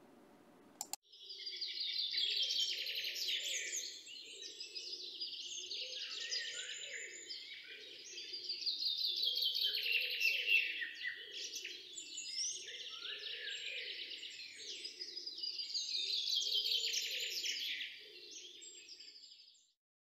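A chorus of small birds chirping and trilling in quick runs, starting about a second in and fading out near the end, with a softer lower layer pulsing underneath.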